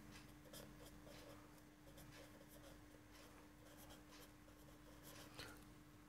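Faint scratching of a felt-tip marker writing on paper, in short irregular strokes, over a faint steady low hum.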